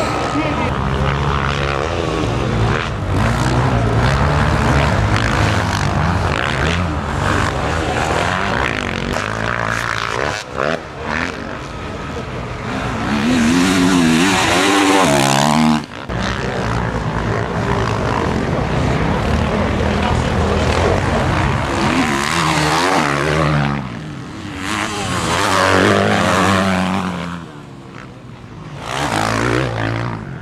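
Motocross dirt bikes' engines revving hard and rising and falling in pitch as riders race past, with several louder pass-bys, the loudest in the middle and again near the end.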